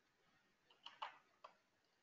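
Near silence: room tone broken by a few faint clicks in quick succession near the middle.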